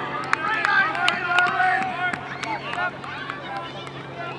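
Soccer players calling and shouting to each other across the pitch, loudest in the first two seconds, with a few short sharp knocks among the voices.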